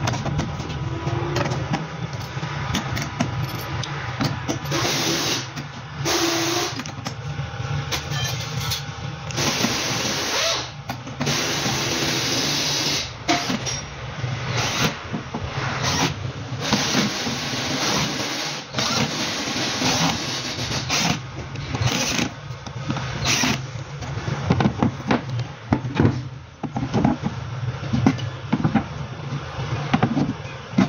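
Cordless drill-driver running in short bursts of a second or two, driving screws to fix concealed cabinet hinges. Short knocks and clicks come more often in the second half.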